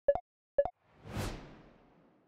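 Two short electronic blip sound effects about half a second apart, each a quick double tick. A whoosh sound effect then swells about a second in and fades away as the picture changes to the next slide.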